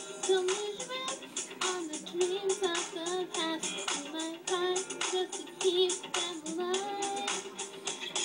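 A girl singing loudly along to backing music, played back through a computer's speaker.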